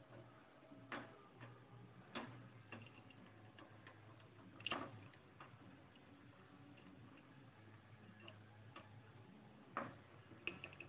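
Faint, sparse metallic clicks of a small wrench on a nut on threaded rod as the nut is tightened, about half a dozen spread irregularly, the loudest a little before halfway, over a low steady hum.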